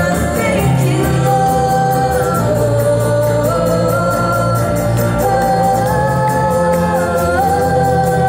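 Live contemporary worship band playing on keyboard, acoustic guitar and bass guitar, with long held sung notes over a steady bass.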